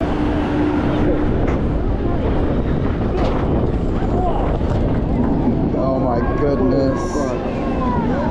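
Wind buffeting the microphone at the top of a Valravn B&M dive coaster's lift hill, over the train's steady running rumble, with a few sharp clicks and riders' voices chattering.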